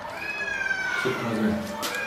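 A cat's long meow, one drawn-out cry sliding slowly down in pitch, over a low voice.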